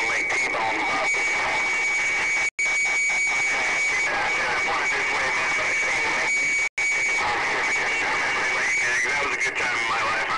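CB radio speaker receiving a jumble of distant skip stations on top of each other: garbled voices talking over one another with a steady heterodyne whistle, and the audio cutting out for an instant twice.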